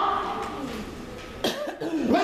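A man's drawn-out voice through a microphone trails off, and about one and a half seconds in he coughs into the microphone.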